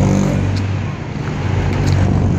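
Engine of a jeepney running as it pulls away along the road, a steady low hum.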